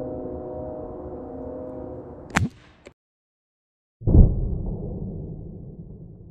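A single shot from a Crosman 1377 .177 pump pellet pistol: one sharp, short pop about two seconds in, heard over a steady low hum of several tones. After a brief cut to silence, a dull thump comes in and fades into a low rumble.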